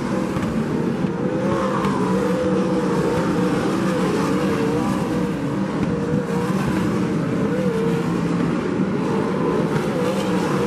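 Several winged sprint cars racing on a dirt oval, their V8 engines making a steady, continuous din, with individual engine notes rising and falling in pitch as cars power through the turns.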